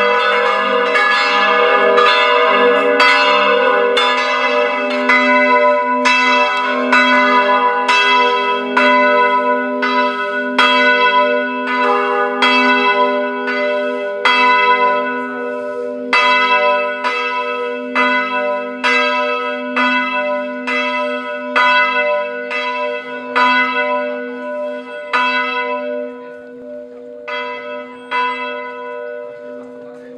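Church bells ringing in a steady run of strikes, about two a second, over a low lingering hum. The strikes fade and thin out near the end as the ringing winds down.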